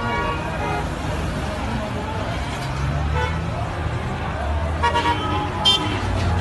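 Street crowd and traffic noise, with a low steady rumble, scattered voices and several short car-horn toots.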